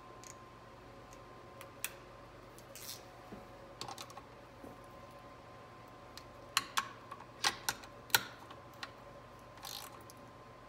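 Irregular sharp metal clicks and taps of a hand wrench being worked on the 13 mm bolts of a 4L60E transmission's valve body, with a quick run of clicks about six and a half to eight seconds in. A faint steady hum runs underneath.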